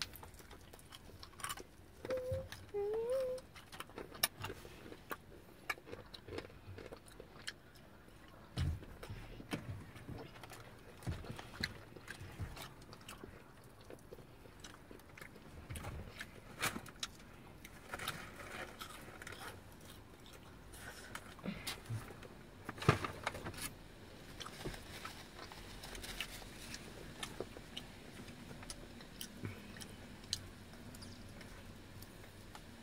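Eating sounds of KFC fried chicken: scattered crunches, clicks and smacks as the crispy pieces are chewed and pulled apart by hand, fairly quiet with a few sharper crunches.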